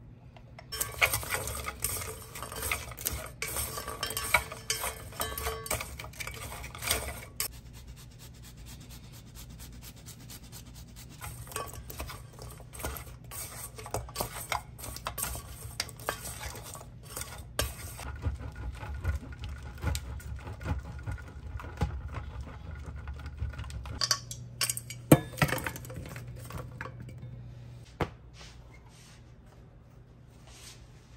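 Wooden chopsticks tossing oiled bread cubes in a stainless steel mixing bowl, with repeated clicks and scrapes against the metal and one sharper clack near the end.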